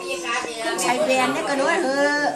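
Speech only: an elderly woman talking.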